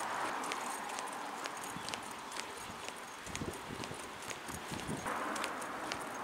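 Footsteps of a person walking on an asphalt road, with sharp shoe strikes about twice a second. A low rumble comes in briefly around the middle.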